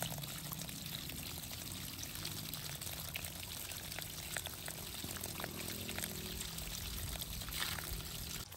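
A thin stream of water pouring and splashing steadily over mossy stones close by.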